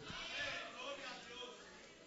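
Faint, distant voices calling out in a pause of the preaching, fading away over the first second and a half.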